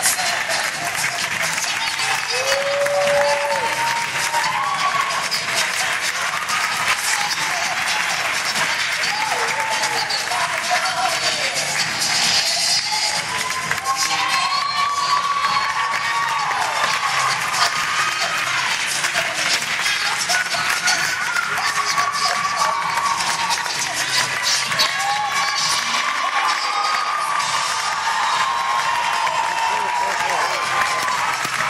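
Music playing over an auditorium's speakers, with the audience applauding and voices calling out from the crowd.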